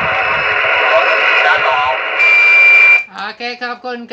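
Single-sideband voice received through the RS-44 amateur satellite, heard from the radio: a distant operator talking under steady hiss, thin and cut off above the voice range. About two seconds in, a steady whistle tone sits over it for under a second, then the received signal stops suddenly.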